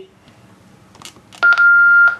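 A loud, steady electronic beep of a single pitch from a TYT TH-9800 quad-band mobile ham radio, starting about one and a half seconds in after a second or so of quiet.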